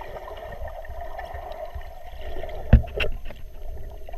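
Water moving around a submerged camera, heard as a steady muffled rush with a low rumble. About three-quarters of the way through come two sharp knocks a fraction of a second apart, the first the loudest.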